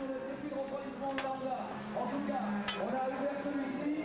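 Pit-stop work on an endurance racing motorcycle: two sharp metallic clinks from the crew's tools, about a second in and again near three seconds in, over a steady background of voices.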